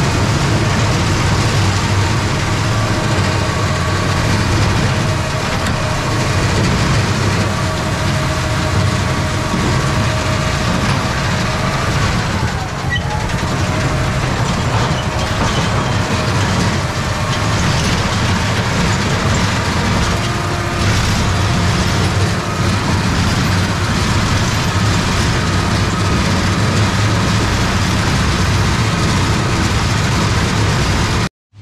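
Farm tractor engine running steadily and loudly, with a deep, even engine note and a faint whine above it.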